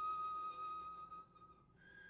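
Solo cello playing a very soft, high, whistle-like harmonic that is held and then fades away about three quarters of the way through. A new, higher harmonic starts near the end.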